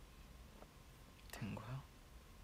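A man's short, quiet murmur about one and a half seconds in, over faint room tone with a few soft clicks.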